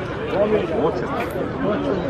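A crowd of spectators talking among themselves, many overlapping voices with no single speaker standing out.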